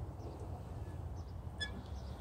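Faint outdoor background: a steady low rumble, with one short faint bird chirp about one and a half seconds in.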